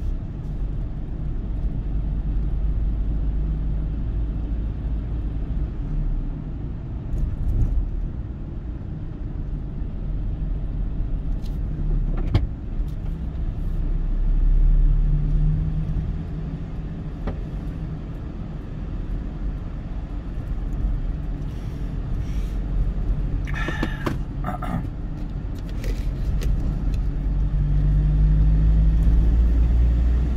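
Car driving in expressway traffic, heard from inside the car: a steady low road and engine rumble that grows louder around the middle and again near the end as the car speeds up. A few short clicks come about 24 seconds in.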